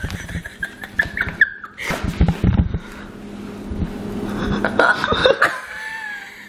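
A young woman giggling and laughing in short bursts while handling crinkly plastic packaging, with rustling and handling clicks throughout.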